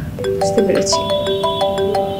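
Mobile phone ringing with a melodic ringtone: a run of bell-like notes stepping up and down in pitch, starting a moment in.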